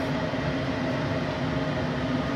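Steady mechanical hum with several held tones from the Thunder Laser CO2 cutter's fans and pumps running between cuts. It fades slightly toward the end.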